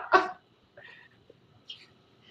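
A short burst of laughter over a video call, then faint brief sounds.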